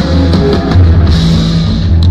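A live band playing loudly: electric bass holding low notes, electric guitar and drum kit.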